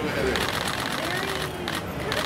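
Rapid, continuous clicking of camera shutters firing in bursts, starting about a third of a second in, with a faint voice under it.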